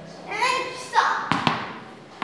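A bowled ball landing with sharp knocks on a hard stone floor, three in quick succession about a second in, just after a voice calls out.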